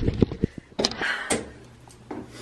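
Handling noise from a handheld camera being swung around: a quick run of dull low thumps, then two short sharp knocks or rustles about a second in.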